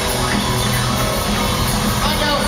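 Live country-rock band playing: electric and acoustic guitars over bass and a drum kit, with a steady, regular cymbal beat.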